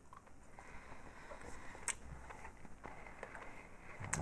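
Faint chewing of a white-chocolate marzipan cookie: soft, irregular mouth sounds, with one sharp click about two seconds in.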